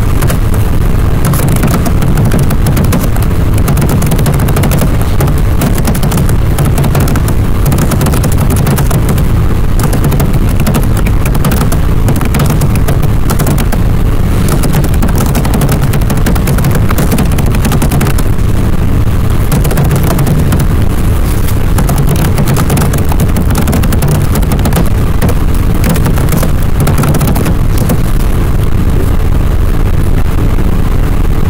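Faulty microphone audio: a loud, steady crackling noise over a low rumble, with no speech in it.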